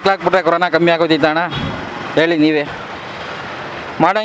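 A man speaking in short phrases, with steady street traffic noise filling the pauses.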